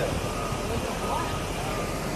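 Steady low rumble inside a bus, with faint voices in the background.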